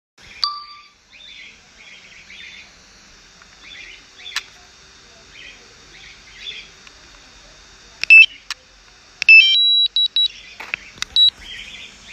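Electronic alert beeps from a DJI drone's remote controller and flight app during landing: a single short tone about half a second in, then from about eight seconds a quick double beep, a steady tone held for about a second, and a run of short beeps. Faint bird chirps sit underneath in the first half.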